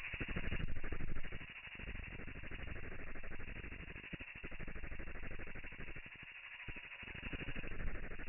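Domestic ultrasonic cleaning tank running, its buzz and cavitation crackle slowed to one-eighth speed so that it comes out as a low, dense, muffled rattle.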